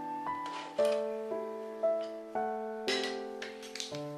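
Gentle background piano music, a note or chord struck about every half second and left to fade. Two brief faint bursts of handling noise, about half a second in and about three seconds in.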